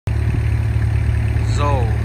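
Engine of a Red Rhino 5000 Plus tracked mini jaw crusher running steadily with a low, even drone. A man's voice starts near the end.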